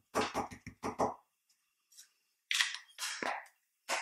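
An ink pad dabbed repeatedly onto a clear stamp mounted on an acrylic block: a quick run of soft taps in the first second. A little past halfway, a short cough in two bursts.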